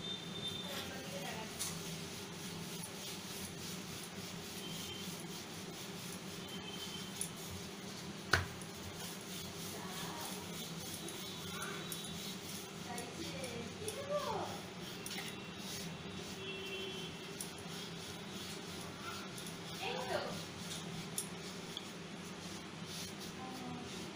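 Wooden rolling pin rolling out a stuffed paratha on a round stone board: soft rubbing over a steady low hum, with one sharp click about eight seconds in.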